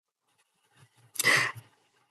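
A short, audible breath through the microphone lasting about half a second, about a second in.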